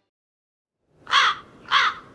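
A crow cawing twice, two loud calls about half a second apart, with a short echo trailing off after the second.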